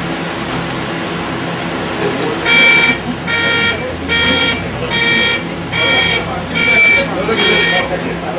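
A horn beeping seven times in a steady rhythm, short pulses a little under a second apart, starting about two and a half seconds in, over the talk and bustle of a group of people.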